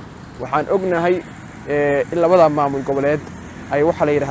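A man talking, with two short pauses in his speech.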